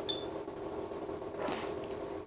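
Datascope Spectrum OR patient monitor's cooling fan running with a steady hum, and a brief high-pitched beep from the monitor as a front-panel key is pressed right at the start.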